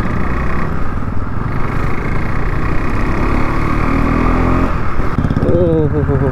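KTM RC 390's single-cylinder engine running as the bike is ridden slowly in traffic, its pitch rising as the rider accelerates from about three to five seconds in.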